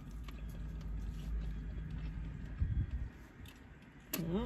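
A person drinking water from a bottle, with faint swallowing and mouth sounds over a low steady rumble, and a brief low thump about two and a half seconds in.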